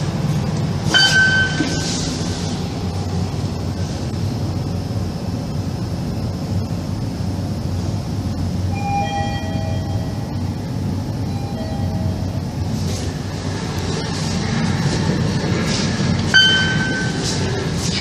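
Steady low hum inside a Mitsubishi machine-room-less elevator car. A short electronic beep sounds about a second in and again near the end, and a few faint two-note tones come in the middle.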